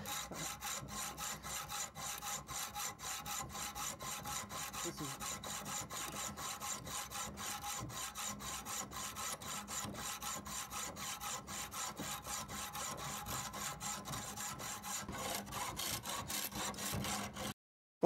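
Hacksaw fitted with a carbide-grit rod saw blade sawing through a padlock's steel shackle: fast, even rasping strokes, about three to four a second, with the blade cutting on both the push and the pull. The sound cuts out abruptly just before the end.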